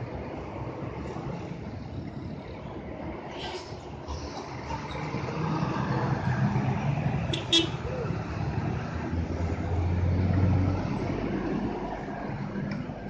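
Road traffic on a bend: the diesel engines of a large tour bus and then a truck grow louder as they pass, with a steady low drone loudest near the end. A brief horn toot sounds about seven and a half seconds in.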